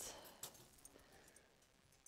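Near silence: faint room tone, with a faint click about half a second in.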